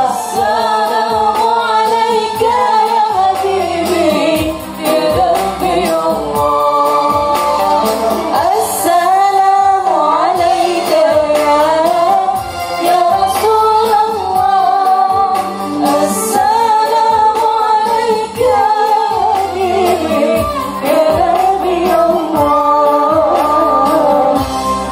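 Live gambus ensemble playing a shalawat: a woman sings an ornamented melody that bends up and down, over oud, keyboard and steady percussion played on an electronic drum pad.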